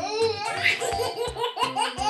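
Laughter in short repeated peals over background music with a steady beat.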